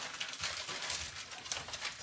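Crackly rustling of card packaging being handled, with many small ticks close together.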